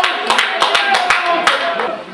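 Scattered handclaps from a few people, irregular and several to the second, with men's voices calling out over them.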